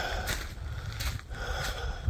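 Footsteps on wood-chip mulch and grass, a step about every half second, over a low rumble.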